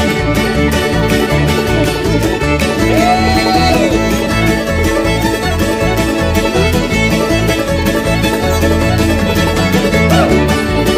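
Old-time stringband playing an instrumental break with a steady driving beat, with banjo, fiddle and guitar over upright bass.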